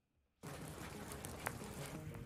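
Moment of silence, then steady rain falling outdoors, an even hiss, with a single faint click about one and a half seconds in.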